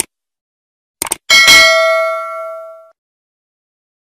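Subscribe-button animation sound effect: quick mouse clicks about a second in, then a single notification-bell ding that rings and fades out over about a second and a half.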